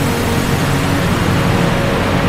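Film-score background music: sustained low notes held over a loud, steady rushing noise.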